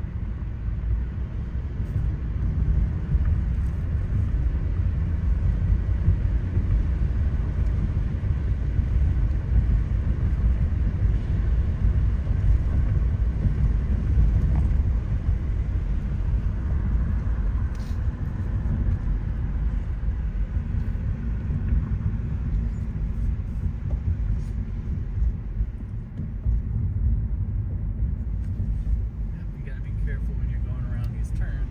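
Steady low rumble of a car driving, heard from inside the cabin: tyre and road noise with the engine running under it.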